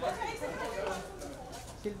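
Several people talking over one another: a crowd's chatter.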